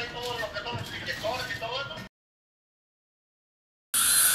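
Voices talking, cut off abruptly about two seconds in, followed by dead silence.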